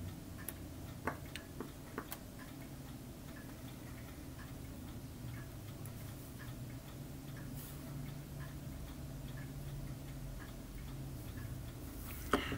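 Quiet room with a faint, regular ticking and a low steady hum; a few light clicks sound in the first couple of seconds, from small tools being handled.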